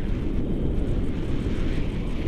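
Wind buffeting an action camera's microphone from the airflow of paraglider flight: a loud, irregular low rumble.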